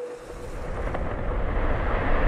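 Deep rumble of an ice cliff starting to break off and calve into the sea, building steadily louder.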